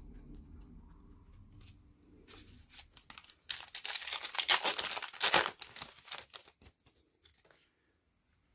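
A trading-card pack's plastic wrapper being torn open and crinkled: a dense crackling rustle that starts about two seconds in, is loudest in the middle and dies away near the end.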